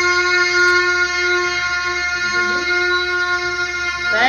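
A child holding one long, steady sung note into a microphone, at an unchanging pitch, breaking off at the very end.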